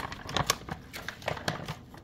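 Kitchen utensils and a container being handled, giving irregular light clicks and taps.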